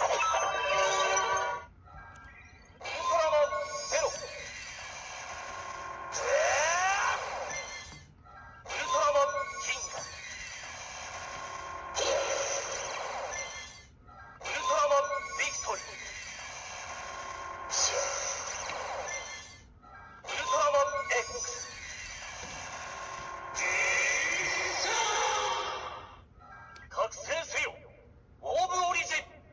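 Bandai Ultra Replica Orb Ring toy playing its recorded voice calls and electronic transformation sound effects through its small built-in speaker as cards are swiped through it. The same sequence repeats about every six seconds: a short call, then a longer effect with a rising whoosh.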